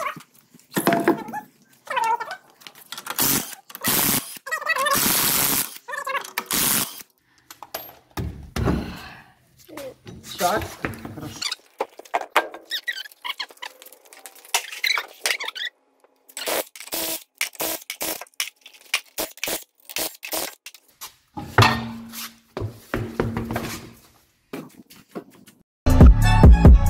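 Workshop handling noises from a car wheel and tyre just taken off and moved about on a concrete floor: irregular knocks and clunks, with a longer rushing burst about five seconds in.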